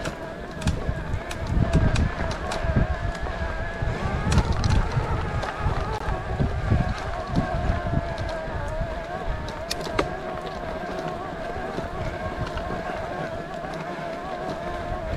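A motor vehicle's engine running with a steady, slightly wavering whine, and wind buffeting the microphone in gusts through the first half.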